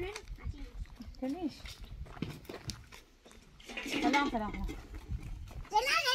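Two short vocal calls: a brief one about a second and a half in, and a longer one with falling pitch around four seconds in, over a low rumble.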